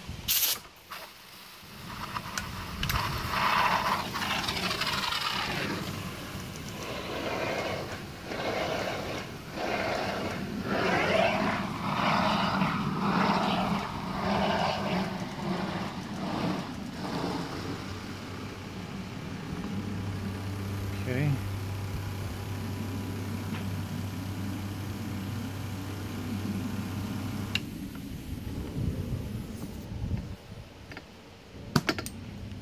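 Aircrete foam generator discharging foam through its wand, with irregular hissing and sputtering of air and foaming solution. A low steady hum joins partway through and stops near the end.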